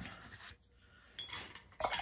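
Paintbrush bristles scrubbing paint into cardstock, a dry rubbing that fades within the first half second, with another short scrub a little past one second in.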